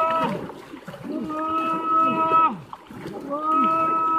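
Several men shouting and calling out with short falling cries while wading and splashing through shallow water. Twice, a long steady pitched tone is held for about a second and a half over the shouts.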